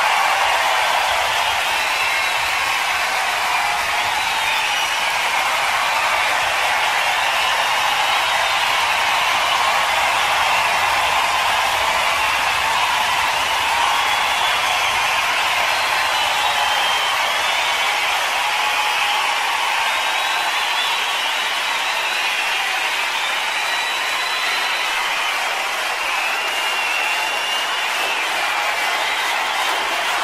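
Live concert audience applauding and cheering, a steady dense clatter of clapping that holds at an even level throughout.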